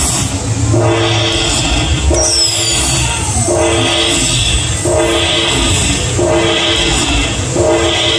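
Dragon Link Panda Magic slot machine tallying its hold-and-spin bonus: a chiming chord repeats about every second and a quarter as each coin's value is added to the win meter. A falling whistle comes near a third of the way in.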